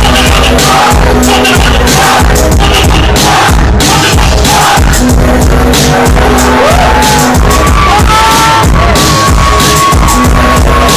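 Live hip hop through a club PA, very loud, with a heavy bass beat and a rapper's voice over it.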